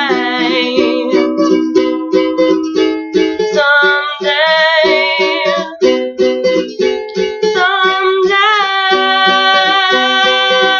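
Ukulele strummed in a steady rhythm while a woman sings long held notes with vibrato over it, in a small room.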